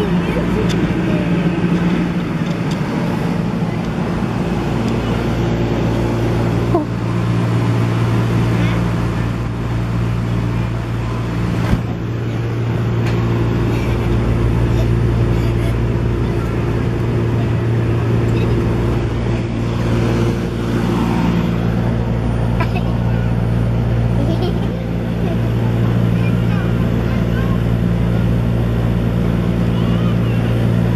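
Steady low drone of the electric air blower that keeps an inflatable obstacle course inflated, running continuously, with a couple of brief thumps.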